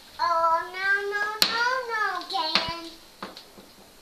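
A young child's long, drawn-out vocal call of about three seconds, sung rather than spoken, rising and then falling in pitch. There is a sharp tap about halfway through and another near its end.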